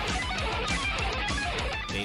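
Heavy metal recording: fast electric guitar playing over a rapid, evenly repeating low drum pulse.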